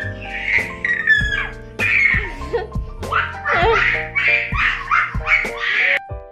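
A toddler laughing in a quick run of giggles, the laughs coming fastest in the second half, over background music.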